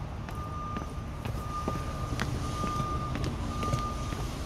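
Footsteps going down outdoor stone steps, while a single-pitched electronic beep repeats steadily in the background, each beep about half a second long.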